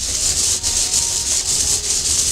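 Hand-cranked 3D-printed plastic ratcheting CVT turning, its ratchet mechanism clicking so fast that the clicks run together into a continuous dry rasp.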